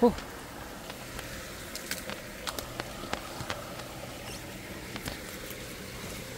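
Footsteps and rustling through dense undergrowth, with scattered sharp snaps and crackles of twigs and dry leaf litter, mostly between about two and three and a half seconds in and a couple more about five seconds in.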